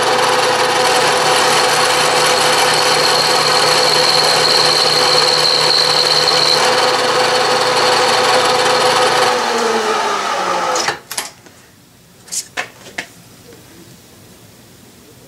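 Vertical milling machine running with an end mill cutting a 45-degree chamfer on the corner of a small brass cylinder block: a steady whine over the cutting noise. About nine and a half seconds in the spindle is switched off and winds down, falling in pitch, and a few light clicks follow.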